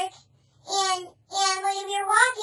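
A high-pitched, childlike voice in two drawn-out, sing-song phrases with no clear words. The first comes about half a second in, and the second starts just past the middle and holds its pitch steady.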